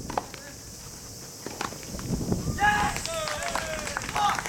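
Tennis ball struck by rackets twice, sharp knocks about a second and a half apart. Then, from about two and a half seconds in, high-pitched shouted calls from players' voices, over a steady high hiss.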